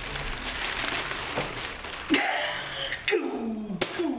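Newspaper pages rustling as they are handled. About halfway through, a man makes short wordless vocal sounds, ending with a falling 'hmm'-like sound.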